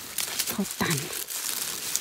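Dry leaf litter and twigs rustling and crackling as a gloved hand pushes into the forest floor to pick a mushroom.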